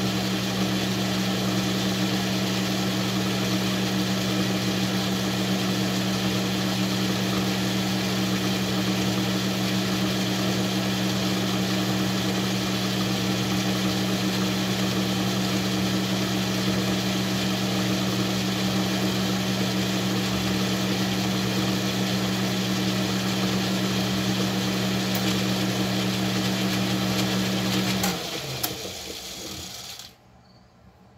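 Metal lathe running at a steady speed, its motor and gearing giving a steady hum. About two seconds before the end it is switched off with a click and winds down.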